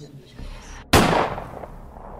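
A single pistol shot sound effect about a second in, sharp and loud, with a reverberant tail that fades over about a second.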